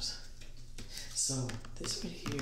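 Light clicks and taps from small objects being handled, with a man's voice coming in about a second in.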